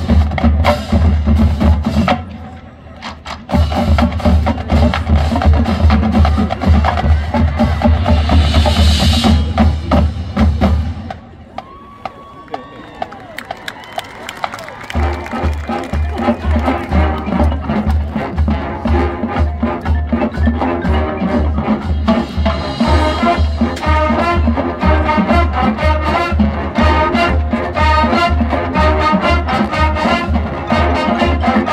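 College marching band playing, with a steady bass-drum beat under drums and brass. The sound breaks off briefly about two seconds in and drops to a quieter stretch from about eleven to fifteen seconds, then the full band comes back in with the horns.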